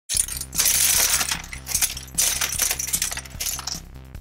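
Small plastic LEGO bricks clattering and tumbling onto a pile of bricks, in several waves of rattling, the longest and loudest from about half a second to a second and a half in.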